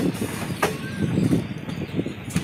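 Passenger train running along the track: a steady low rumble from the wheels, with two sharp clacks, the first right at the start and the second about two-thirds of a second later.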